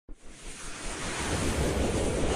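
Whoosh sound effect of an animated logo intro: a rush of noise that swells steadily louder.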